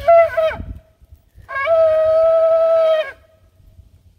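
A shofar blown in two blasts: a short one whose pitch wavers and breaks, then a longer, steady held note of about a second and a half.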